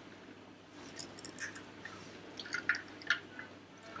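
Faint, scattered light clicks and taps of small plastic toys being handled on a tabletop, a few at a time through the middle and later part.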